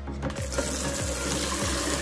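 Kitchen tap running into a plastic bowl in a stainless steel sink, the water starting about half a second in, over background music with a steady beat.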